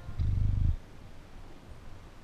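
A short, loud low rumble of air hitting the microphone, lasting about half a second near the start, as a held brass chord cuts off; then only faint background hiss.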